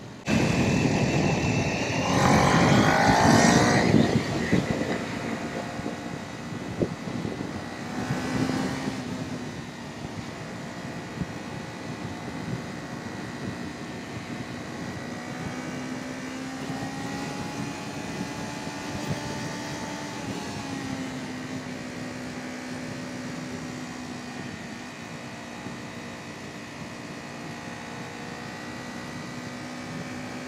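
Kawasaki Ninja 400 parallel-twin engine accelerating hard for the first few seconds, its pitch rising, with another brief surge about eight seconds in. It then settles into steady cruising with an even engine tone that drifts slightly up and down.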